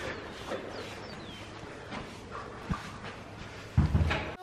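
A brush rasping through a horse's thick, fuzzy winter coat, with a few thumps near the end.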